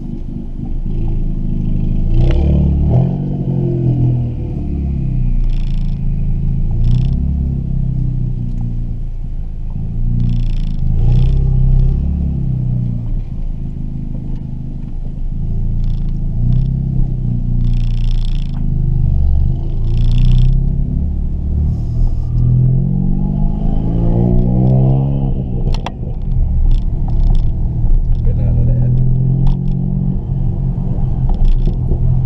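Turbocharged Ford Fiesta ST engine heard from inside the cabin while driving, its note rising and falling as it pulls through the revs and eases off. Several short hisses come between the pulls.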